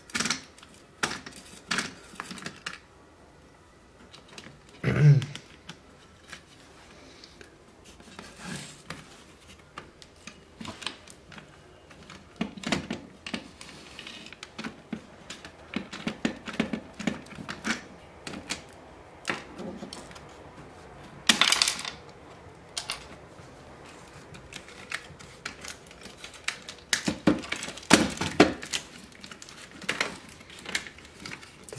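Irregular small clicks, taps and scrapes of a screwdriver and hand tools against the plastic housing, circuit board and metal parts of a radio being dismantled, with louder knocks and clatters about five, 21 and 28 seconds in.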